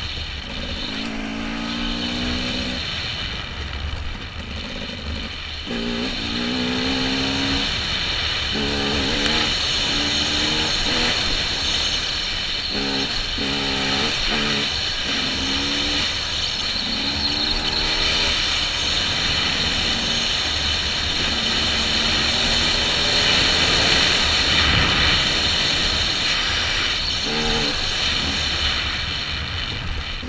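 Dirt bike engine running while riding a dirt trail, its revs rising and falling in short runs as the rider accelerates and shifts, with steady wind noise on the helmet-mounted camera.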